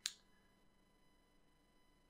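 Near silence: faint room tone, with one brief sharp click right at the start.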